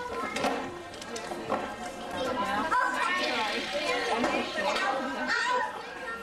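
Crowd of young children talking and chattering at play, many voices overlapping in a large, busy room, with a few light knocks.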